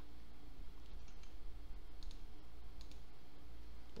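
A few scattered, faint clicks from a computer mouse and keyboard over a steady low hum.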